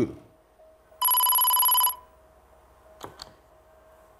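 Quiz-show letter-reveal sound effect: one electronic bell-like ring with a fast flutter, lasting about a second and starting about a second in, as a letter is opened on the answer board.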